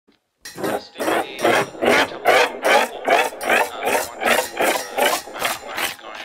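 Rhythmic rasping loop in an electronic ambient/techno track, scratchy strokes repeating about two and a half times a second with a wavering tone inside each.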